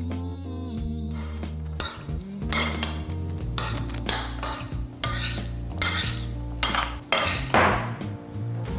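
Metal spoon stirring diced avocado in a china bowl, with repeated clinks and scrapes against the bowl, thickening after the first couple of seconds.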